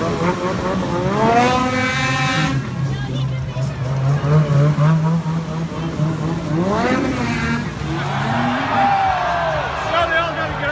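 Ski-Doo snowmobile engine revving as it drives through open slush water, rising in pitch twice, about a second in and again near seven seconds, with a falling pitch near the end as the sled fails to make the water skip and bogs down. Crowd voices underneath.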